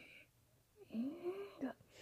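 A person's breathy, wordless voice in the middle, rising in pitch and then held for about a second, followed by a short sharp click near the end.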